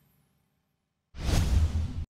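The last of the outro music fades away, then after a short silence a whoosh sound effect with a deep rumble comes in suddenly, lasts under a second and cuts off abruptly.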